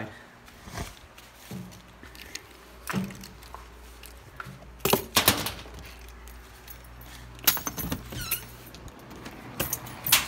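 A set of keys jangling as they are picked up and carried, among a series of sharp clicks and knocks from handling and a door being opened.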